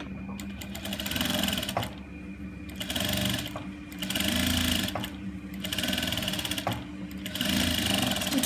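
Industrial sewing machine stitching a cotton seam in about five short runs, stopping and starting every second or so, over a steady motor hum.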